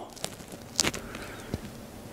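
A pause between spoken remarks: low, steady background hiss with a few faint clicks, the clearest a little under a second in.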